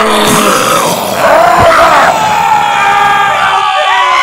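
Cartoonish sound effects and vocal exclamations, with gliding pitches and a sharp hit about a second and a half in, giving way to steady background music.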